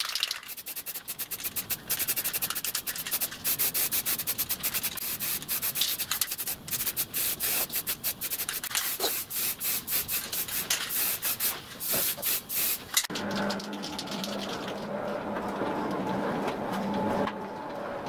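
Rapid scratchy rubbing strokes, like hand-sanding a metal frame, for about thirteen seconds. Then a steady low engine hum takes over.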